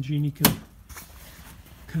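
A single sharp clack about half a second in as the hinged side door of a sandblast cabinet is pushed shut and latched.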